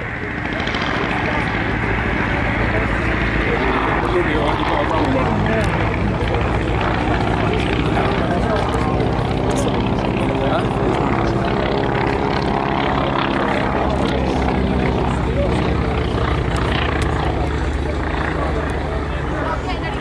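Boeing P-26 Peashooter's 600-horsepower Pratt & Whitney Wasp radial engine running steadily as the aircraft flies its display. Its note slides in pitch as it passes, around five seconds in and again around thirteen seconds in.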